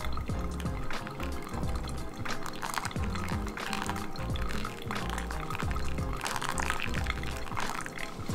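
Hot water poured from a kettle into a Hario V60 dripper over coffee grounds, a steady trickling pour bringing the brew up to its final 300 g of water. Background music plays throughout.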